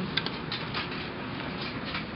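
Card-operated laundry machine running, its drum turning the load of clothes: a steady rumble with a few light, irregular clicks.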